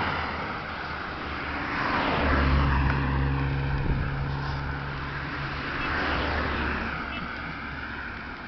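Road traffic: cars passing by one after another, each swelling and fading. The loudest pass is about two to three seconds in and carries a deep engine hum.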